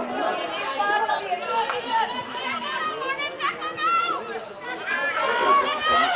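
Overlapping shouts and chatter from many voices: spectators on the touchline and players calling out during play.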